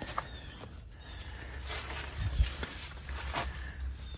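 Folding swivel ground-blind chair being raised from its laid-down position: quiet handling noise with a few soft clicks and knocks from the frame, and a low thump a little past halfway.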